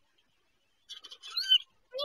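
A young kitten mewing: a short, high-pitched cry about one and a half seconds in, with a brief scratchy noise just before it, and another cry starting at the very end.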